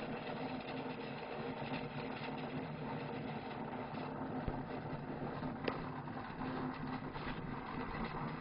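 Steady background hum and hiss, with a short thump about four and a half seconds in and a sharp click a little over a second later.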